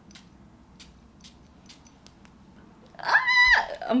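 Several faint, quick spritzes of a perfume atomiser, about half a second apart. About three seconds in, a short high-pitched call rises, holds and drops.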